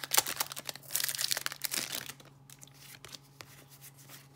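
A Pokémon booster pack's foil wrapper crinkling and tearing open in the hands for about two seconds, then only faint rustles and clicks as the cards are handled.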